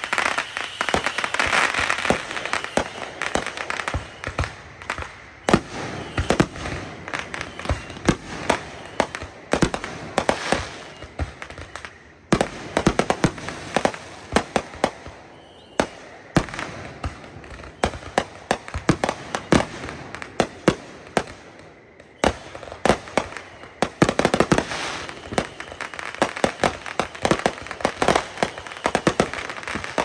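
Aerial fireworks going off in rapid succession: a dense run of sharp bangs and crackling, easing off briefly twice before picking up again.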